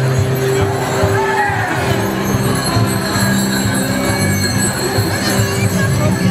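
Band music with held low notes, over the steady jingling of the round bells worn on the harnesses of Fasnet costume figures as they walk.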